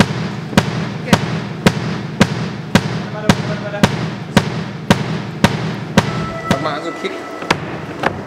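A drum struck in a steady beat, nearly two sharp hits a second, over a low hum that stops about six and a half seconds in.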